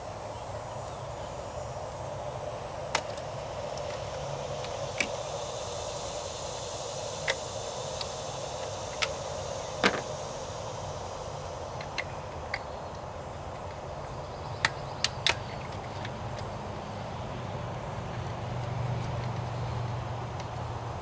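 Scattered sharp clicks and snaps of a headlight bulb's retaining clips and the plastic headlight housing being handled as new retaining clips are fitted, over a steady high insect drone.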